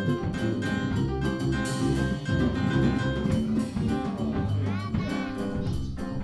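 Live jazz jam: archtop electric guitar, piano, double bass and drum kit playing together, with regular drum and cymbal strokes over walking bass notes.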